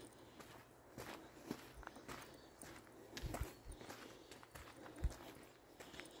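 Footsteps of a walker on a dirt forest trail: faint, irregular soft crunches and thumps, the loudest about five seconds in.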